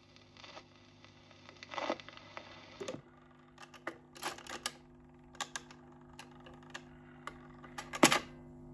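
Dansette Major record player at the end of a 45: the stylus clicks in the run-out groove over a low hum. About three seconds in, the autochange mechanism lifts the tonearm and swings it back to its rest with a string of mechanical clicks, ending in a louder knock.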